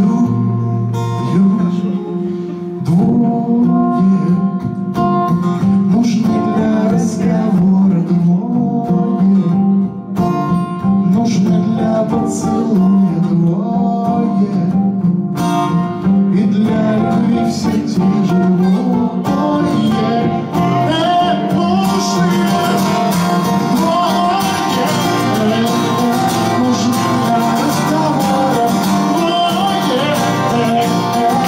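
Two steel-string acoustic guitars playing a song together live, picked and strummed. About two-thirds of the way in the strumming turns denser and brighter.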